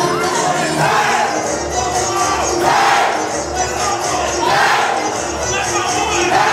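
A crowd shouting and cheering over dance music with a steady bass beat. The shouts swell in loud surges about every two seconds.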